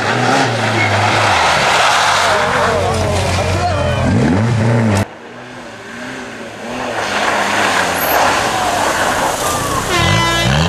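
Rally car engines at full throttle: a Skoda hatchback revving up and down as it takes a corner. Halfway through an abrupt cut brings a second car, a Peugeot 205, heard quieter at first and then rising as it revs harder.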